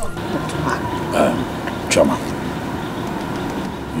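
Steady rumbling background noise with a faint constant hum under it, with a single short spoken word about two seconds in.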